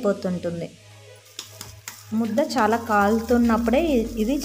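A woman talking, with a short pause about a second in where a metal ladle scrapes and knocks a few times in an aluminium pot of stiff ragi mudda dough.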